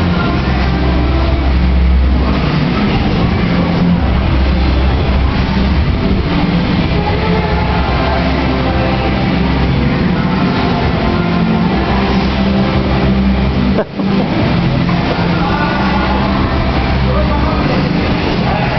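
A moving walkway's steady mechanical rumble and low hum, heard while riding it, with people talking nearby. The sound briefly cuts out about two-thirds of the way through.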